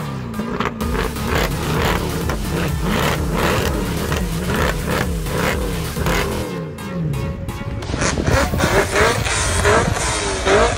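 Mercedes-AMG C63 6.2-litre V8 engines revving again and again, their pitch climbing and dropping in quick overlapping sweeps, with music underneath.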